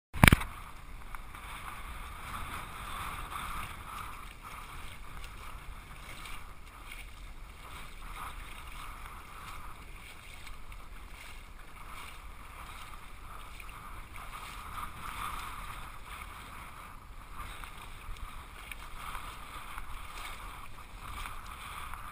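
Shallow sea water lapping and sloshing around a camera held right at the surface, a steady wash of noise with a sharp knock right at the start.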